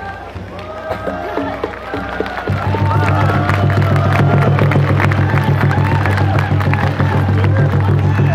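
Crowd chatter, then about two and a half seconds in a loud, low, sustained group chant from a line of Naga dancers starts suddenly and holds steady.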